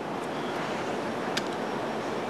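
Steady background hiss of room and recording noise, with one faint small click a little past halfway through.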